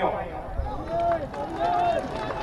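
A man's voice at an outdoor rally, heard through a microphone and loudspeakers: a few short spoken words and a brief pause, softer than the speech around it.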